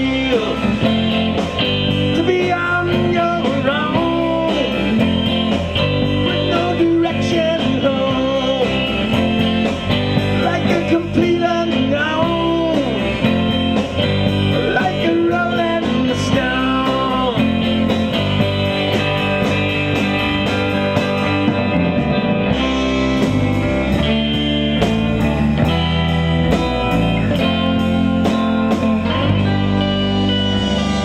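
Live blues band playing an instrumental passage: electric guitars, bass guitar and drums with a steady cymbal beat, and a lead line of bent, sliding notes over the top.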